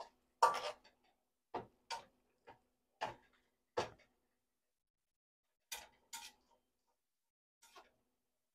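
Two spatulas scraping and knocking against a wok as beef is tossed, in about ten short separate strokes with silence between, the loudest about half a second in.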